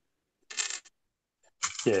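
A brief clatter of small plastic LEGO pieces rattling in a plastic storage tub, about half a second in.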